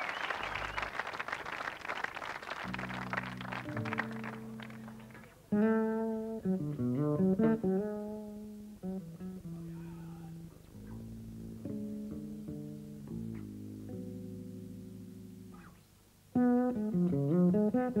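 Applause dies away over the first few seconds as a live rock band starts a slow instrumental: long held chords, with a louder lead melody coming in about five and a half seconds in and again near the end.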